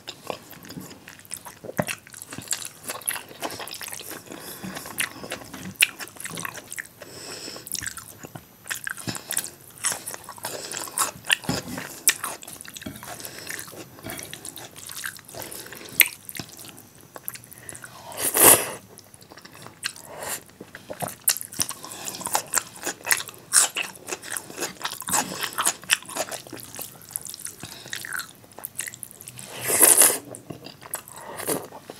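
Close-miked chewing and wet mouth sounds of a person eating rice and dal by hand, with small smacks and squelches throughout and the fingers squishing rice in the plate. A louder burst comes about two-thirds through and another at the end.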